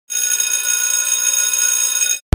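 A steady, high-pitched electronic tone of several pitches sounding together, held without change.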